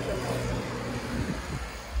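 A motor vehicle's engine running close by: a low steady hum that fades after about a second, over general street noise.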